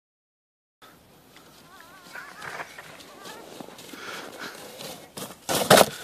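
Plastic sled sliding down packed snow, a scraping hiss that grows louder as it approaches, with distant children's voices calling out. Near the end comes a loud, sharp scrape and thud as the sled hits the snow jump and launches.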